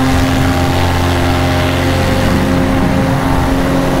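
Paramotor engine and propeller running at a steady throttle in flight, a constant drone with an even hiss over it.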